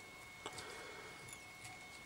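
Quiet room tone with a faint steady high whine, and a few faint soft clicks from fingers handling pheasant tail fibres and thread at the fly-tying vise, the first about half a second in.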